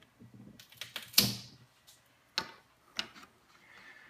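A few sharp clicks and knocks at close range: a cluster with one loud knock about a second in, then two single clicks about half a second apart near the three-second mark.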